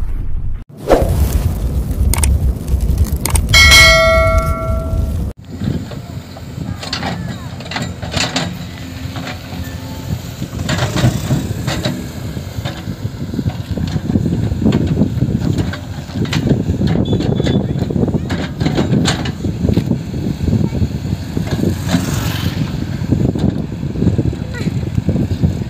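An intro sound effect, a low rumble with a ringing chime, cuts off suddenly about five seconds in. After it, a JCB 3DX backhoe loader's diesel engine runs under load while the backhoe digs soil, with occasional sharp knocks from the arm and bucket.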